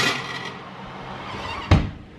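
A frozen pizza set onto a metal oven rack with a clank, a low hum from the convection oven's fan, then the oven door shutting with a thump near the end.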